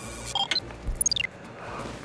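Electronic beeps: a few short tones about half a second in, then a quick run of beeps falling steeply in pitch about a second in.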